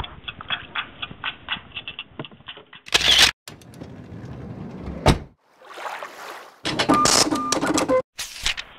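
A quick run of light clicks and knocks in a small fishing boat as a netted trout is handled, then a string of edited-in slideshow transition effects: a loud short burst, a sharp hit, a whoosh and a short steady tone near the end.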